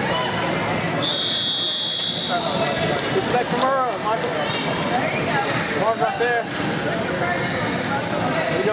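Voices of coaches and spectators shouting across a busy grappling tournament arena. About a second in, a single steady high beep sounds for about a second and a half.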